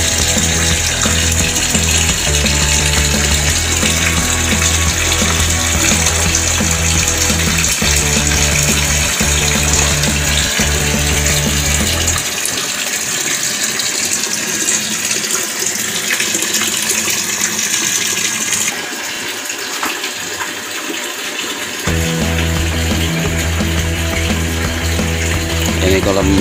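Water pouring from an inlet pipe into a concrete fish pond, a steady splashing rush that eases a little near the end. Music with a stepping bass line plays alongside it, dropping out for several seconds in the middle.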